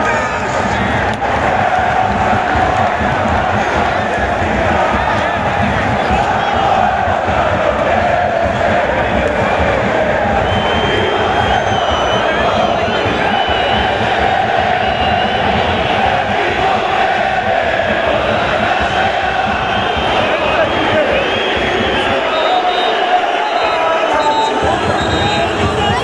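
A large stadium crowd of football supporters singing a chant together, loud and continuous, with many voices blending into one sustained sound.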